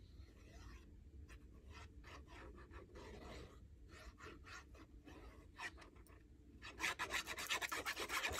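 Faint scratching and rubbing of a fine-tip glue bottle's metal tip drawn across paper as liquid glue is laid along a page edge, getting louder and denser near the end.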